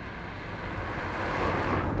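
A car approaching along the street, its tyre and engine noise growing steadily louder.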